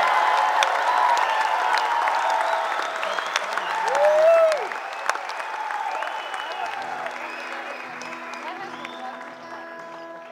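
Concert audience applauding and cheering, with a loud whoop about four seconds in, the applause fading through the second half. Near the end, guitar notes start softly on stage.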